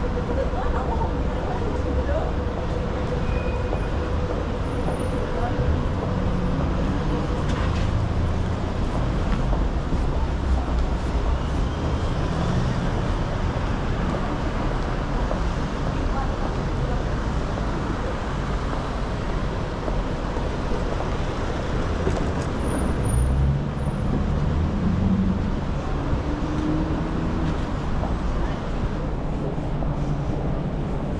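Busy city street: steady rumble of road traffic from cars, vans and taxis, with passers-by talking indistinctly, most clearly in the last quarter.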